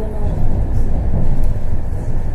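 Steady low rumble of a tram running, heard from inside the passenger cabin.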